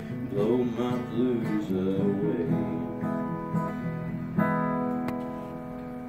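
Acoustic guitar strummed, closing a song, with a man's voice singing the last line over it in the first two seconds. A final chord struck about four and a half seconds in rings out and slowly fades.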